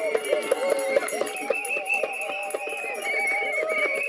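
Several voices singing together over quick, rhythmic percussive clicks, like a rattle or clapping.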